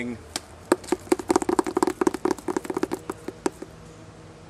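A plastic-wrapped sketchbook being handled: a run of rapid, irregular clicks and crackles that starts just under a second in and stops about half a second before the end.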